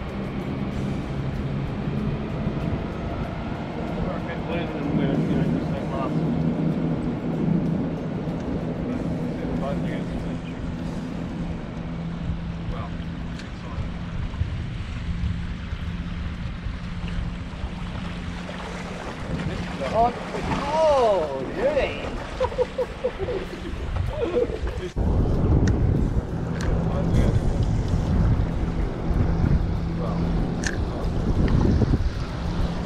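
Wind buffeting the microphone and water slapping against a small boat's hull, over a steady low hum. A brief wavering sound comes about two-thirds of the way through. The wind grows rougher and louder near the end.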